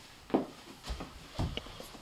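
A few soft, irregular footsteps and thuds of people walking quickly indoors, down onto a carpeted staircase.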